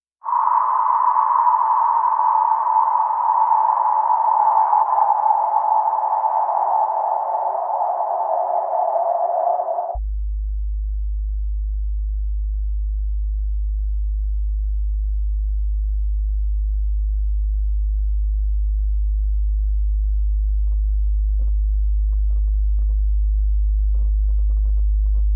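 Contemporary chamber music. For about ten seconds a cello sounds a noisy band of tone around 1 kHz that slowly sinks in pitch. It cuts off suddenly and is replaced by a very low steady tone: a 51.2 Hz sine tone with a held contrabass clarinet note, slowly growing louder, with faint clicks near the end.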